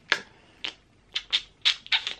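Six short, sharp clicks, unevenly spaced, with quiet between them.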